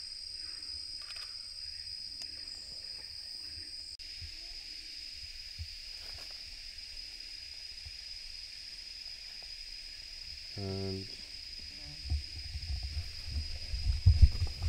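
Forest insects droning steadily at one high pitch, with a second, higher insect tone that stops about four seconds in. Near the end come low knocks of equipment being handled close by.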